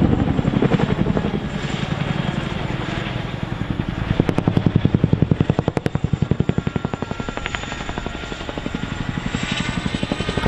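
RAF CH-47 Chinook tandem-rotor helicopter flying a display overhead, its rotor blades beating in fast, rhythmic pulses. The beat swells louder about halfway through, eases, and builds again near the end as the helicopter banks.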